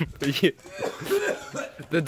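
A person coughing a couple of times, with short vocal sounds in between, set off by the burn of a just-eaten Carolina Reaper pepper.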